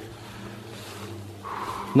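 A steady low hum with a brief soft rustle near the end.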